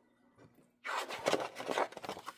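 Dry scraping rustle of a handheld ink pad rubbed across scored cardstock, starting just under a second in and lasting about a second.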